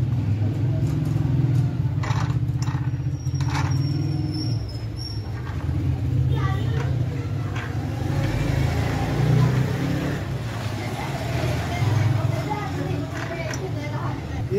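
Flour-mill (chakki) machinery running with a steady low drone, with people talking over it.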